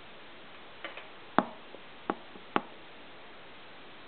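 A few short, sharp taps over a steady low hiss: two faint ones about a second in, then three louder ones spaced roughly half a second apart.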